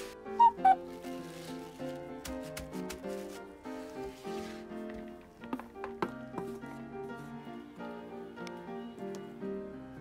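Background music with a light melody. Under it come a short pair of pitched blips near the start, then brief scraping and a few knocks as a wooden spatula scrapes mashed potato and chicken mixture from a metal tray into a bowl.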